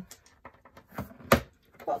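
Sharp clicks of a photo frame's retaining tabs being pushed back down with tweezers: a couple of faint ticks, then one loud, sharp click a little past a second in.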